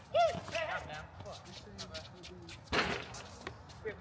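Outdoor pickup basketball on a hard court. A player gives a short shout just after the start, scattered ball bounces and footsteps follow, and there is one loud sharp smack nearly three seconds in.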